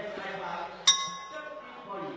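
A single strike of the boxing ring's bell, sharp and ringing, fading over about a second: the bell signalling the start of a round, here round three.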